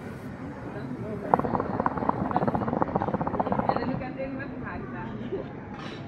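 Water in the base of a Nargilem NPS Classic hookah bubbling rapidly while a long draw is pulled through the hose, for about two and a half seconds starting about a second in.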